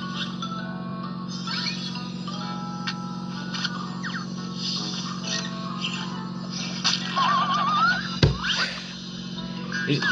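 Cartoon soundtrack: light music with comic sound effects over a steady low hum, including a warbling, rising whistle about seven seconds in and a sharp thump just after eight seconds.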